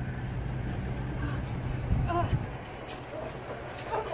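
Steady low mechanical rumble, with a brief faint voice-like sound about two seconds in.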